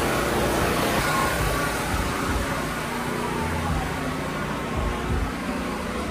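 Busy outdoor street ambience: a steady wash of noise with faint distant voices and music, and occasional low rumbles.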